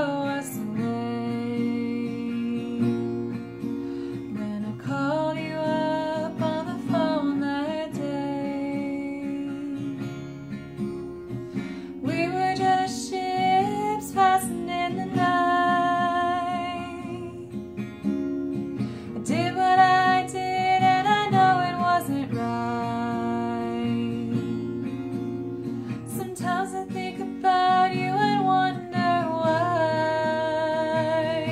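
A woman singing a slow song while fingerpicking a capoed Epiphone acoustic-electric guitar. The vocal comes in phrases with held, wavering notes, and the picked guitar carries on alone in the gaps between them.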